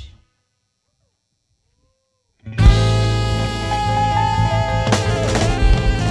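The tail of a held band chord fades and cuts off, leaving about two seconds of dead silence; then a live band of drum kit, electric bass, electric guitar, saxophone and keyboards comes in on a loud hit and plays on, with a cymbal crash near the end.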